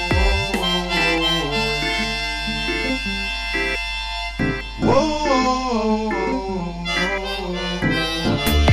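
Harmonica playing a melody with bent, wavering notes over a drum beat. A new phrase starts about five seconds in.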